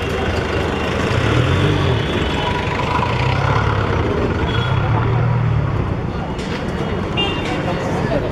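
Busy street ambience: a steady low rumble of traffic with the chatter of passers-by mixed in.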